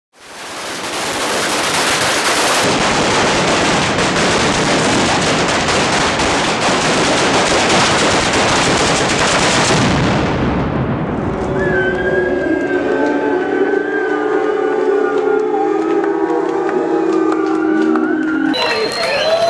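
A long chain of firecrackers going off in dense, rapid crackling for about ten seconds, then dying away. As it stops, a crowd's shouting voices come up.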